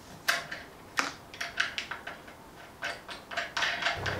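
Small metal parts clicking and clinking as hardware is fitted by hand to a metal bracket clamped in a bench vise: a dozen or so irregular, sharp taps.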